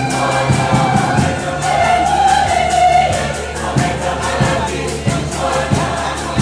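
A mixed church choir of men and women singing a Swahili gospel song in harmony, over a steady percussion beat and a bass line.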